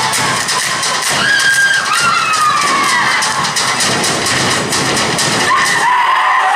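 Samoan group dance performance: rapid, sharp claps and strikes keep a rhythm while the crowd cheers and lets out high, falling whoops and shouts over it.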